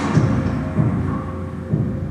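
Low, deep rumble with about three heavy thuds from a music video's soundtrack, played back, after the singing breaks off.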